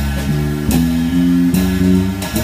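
A small band playing together: piano with plucked strings and drums, in a jazzy style.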